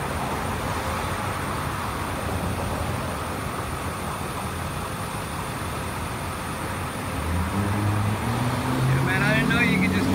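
Steady street traffic and road noise. About seven seconds in a low hum comes up, and near the end a man starts talking.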